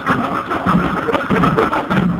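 Murga percussion playing loudly: a bass drum, a snare drum and a painted barrel-style drum struck with sticks in a fast, steady, driving rhythm.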